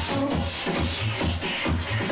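Electronic dance music from a DJ set, with a steady, heavy kick-drum beat and hi-hats ticking between the beats.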